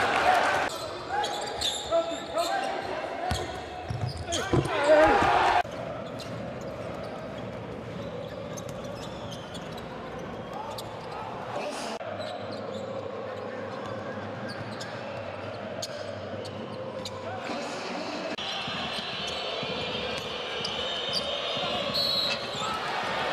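Basketball game sound in an arena: for the first six seconds, loud excited voices over crowd noise, then a quieter steady crowd murmur with a ball bouncing on the court.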